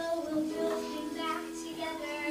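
A child singing a show tune over musical accompaniment of held notes.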